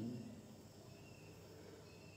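Quiet room tone between spoken phrases, opening on the falling tail of a word. Faint high insect trills, typical of crickets, come twice: about a second in and near the end.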